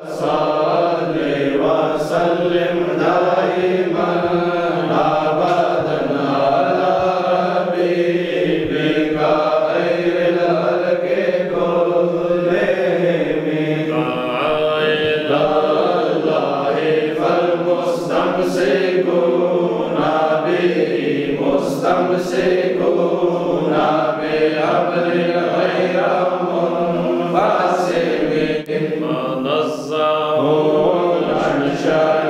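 Men chanting a devotional Islamic recitation: one unbroken, melodic chanted line with long held notes.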